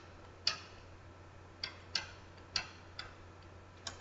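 Faint, irregular clicks of a pen tip tapping a writing surface as characters are written, about six in four seconds, over a faint steady low hum.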